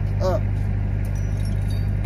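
Engine-driven welding machine running steadily with a low, even drone.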